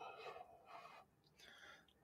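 Near silence: the faint tail of a man's long exhaled breath fading in the first moments, then a couple of faint soft breaths.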